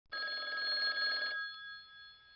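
A telephone ringing: one ring of a little over a second, made of several steady high tones, then its tone fading away.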